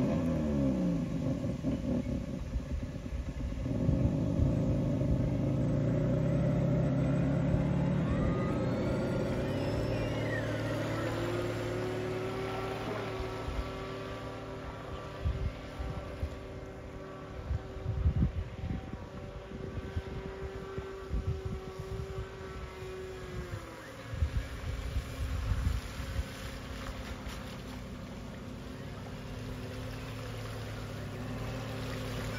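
Motor of a radio-controlled model runabout driving it across a pond, with water rushing off the hull. The motor's pitch climbs over the first few seconds, holds steady for over ten seconds, then drops about three quarters of the way through as the boat eases off.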